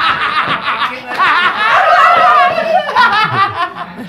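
A group of men laughing hard together, in several bursts that fade toward the end.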